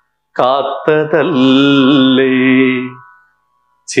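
A solo voice singing lines of a Malayalam poem in a slow, chant-like melody, holding long notes with gliding pitch; it comes in about a third of a second in and fades out around three seconds.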